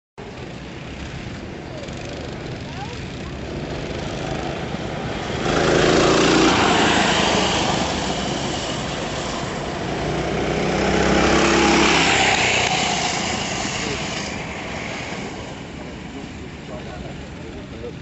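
A pack of racing go-karts passing on the track, their small engines buzzing. The sound swells twice, about six seconds in and again around eleven to twelve seconds, fading between and toward the end.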